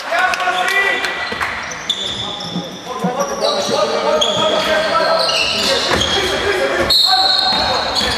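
Basketball game in a gymnasium: a ball bouncing on the hardwood court, sneakers squeaking in short high squeals, and players and onlookers calling out, all echoing in the large hall.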